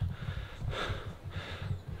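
A man breathing between sentences while walking, two short breaths about half a second apart, over a low rumble on the handheld camera's microphone.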